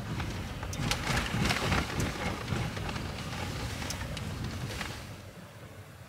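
Road and tyre noise heard inside a moving car's cabin: a steady low rumble with a few light clicks, easing off about five seconds in.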